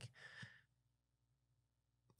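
Near silence: a faint breath at a close microphone in the first half second, then room tone.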